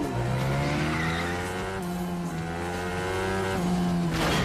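A motor or engine running up in pitch over about a second, holding high, then dropping off abruptly near the end, with film score underneath.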